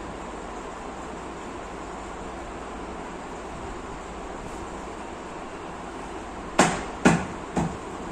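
Steady background hiss, then three sharp knocks about half a second apart near the end: a laminated particleboard table panel being struck by hand to seat it onto its fittings during flat-pack assembly.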